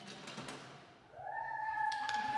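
A handheld drill whirring: a few clicks and rattles, then the motor spins up about a second in and holds a steady whine.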